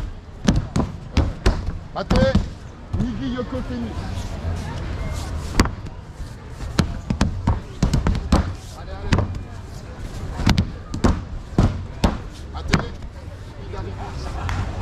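Judoka slapping down onto foam tatami mats in repeated breakfalls (ukemi), a series of sharp slaps at irregular intervals, several a second at times, with a lull of about two seconds early on.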